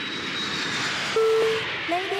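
Jet airliner engine noise, a steady rushing sound with a faint high whine, used as an intro sound effect. About a second in, a single steady chime-like tone sounds for about half a second.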